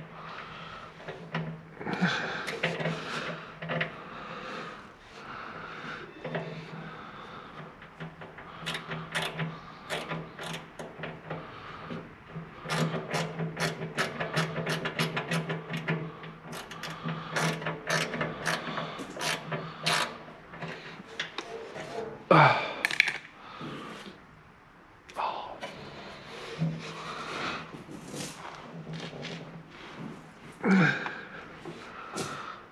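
Metal hand tools clicking and clinking while someone works at seized, corroded fuel hoses on an excavator's tank, over a steady low hum. About 22 seconds in comes a short falling grunt of effort.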